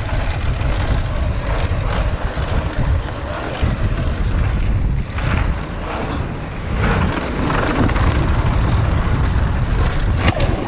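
Wind rushing over the action-camera microphone and a Haibike Dwnhll 8.0 downhill mountain bike's tyres rolling fast over a dirt and gravel trail, with scattered knocks and rattles as the bike runs over bumps.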